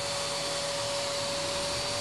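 Handheld router motor serving as a CNC router spindle, running at speed with a steady whine over a rushing hiss.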